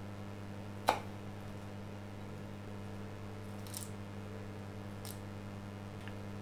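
A chef's knife striking a wooden cutting board once, sharply, while cutting a scallion, about a second in. Two fainter, softer scuffs follow later. A steady low hum runs underneath.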